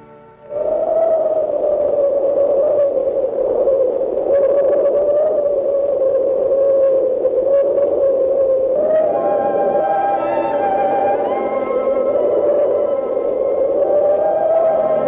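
Cartoon blizzard sound effect: a wind howl as one wavering tone over a hiss, starting suddenly about half a second in. Held orchestral chords join the howl about nine seconds in.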